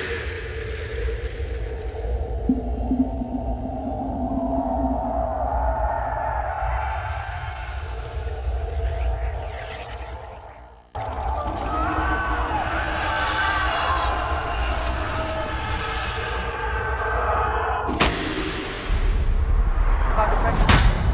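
Studio-made film sound design played back through a hall's speakers: a swelling layered drone fades almost to nothing about eleven seconds in, then cuts suddenly to a denser layered texture. A sharp click comes near the end, followed by a louder section.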